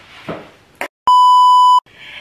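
A single loud, steady electronic bleep at one pitch, the standard censor-style 1 kHz tone, lasting about three-quarters of a second around the middle. It starts and stops abruptly, with dead silence cut in just before and after.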